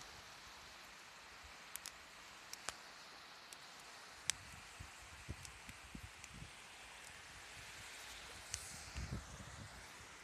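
Faint steady hiss of wind and small waves washing on the shore, with scattered light clicks and a few soft low thumps in the second half.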